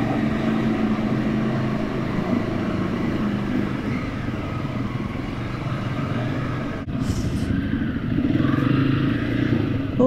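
Honda CRF300 single-cylinder motorcycle engine running at low speed, with other motorcycles running ahead, inside a ferry's enclosed steel vehicle deck. It gets louder from about two seconds before the end.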